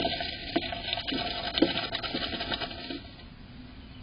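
Tree swallow shuffling and turning in its dry-grass nest cup inside a wooden nest box: a run of close, scratchy rustles and taps that stops about three seconds in.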